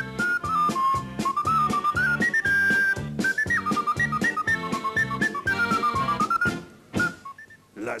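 Ocarina playing a quick, stepping melody in high notes over a band accompaniment with a steady beat; the music breaks off near the end.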